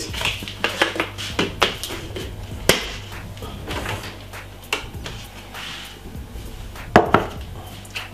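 Kitchen utensils and containers being handled: scattered light clinks and knocks, several in the first three seconds and a sharper knock about seven seconds in.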